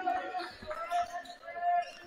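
Basketball bouncing on a hardwood gym floor as it is dribbled, with a few short knocks, under the faint voices of players on the court.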